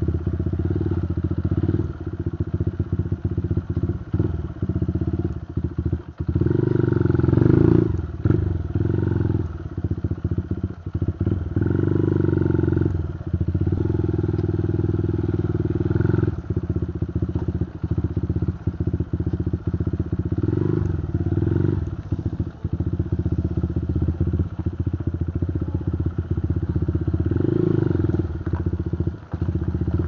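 Motorcycle engine running as the bike is ridden over a rough dirt and gravel road. The engine note swells several times, and there are rattles and knocks from the bumps.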